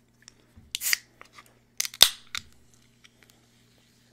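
Close-miked eating sounds: a handful of sharp clicks and crisp crunches, the loudest about two seconds in.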